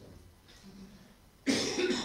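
A person coughing near the end, a sudden harsh burst with a second push straight after, following a quiet stretch of room sound.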